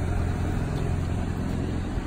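Steady low rumble of a car engine idling.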